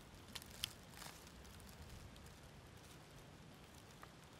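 Near silence: quiet woodland ambience, with a few faint clicks or rustles in the first second.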